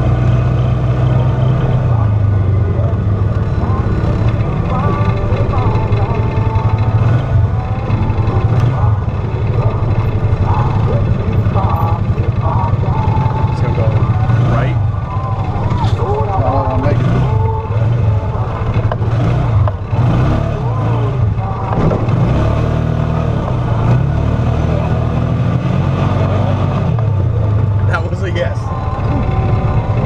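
Off-road vehicle's engine running while driving over a rutted dirt trail, with scattered knocks and rattles from the bumps.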